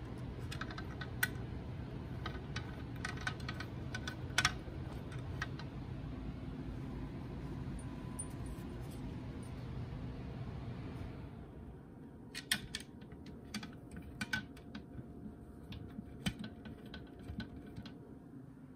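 Scattered light clicks and taps of small metal parts, screws and a steel valve-body plate, being handled and set in place during a transmission mechatronic unit reassembly. A steady low hum runs underneath and drops away about eleven seconds in, leaving the clicks more distinct.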